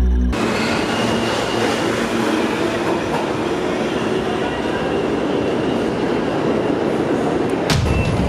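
New York City subway train running in a station: a steady rumble and rattle of wheels on the track. Near the end it gives way to heavier low street traffic noise with sharp clicks.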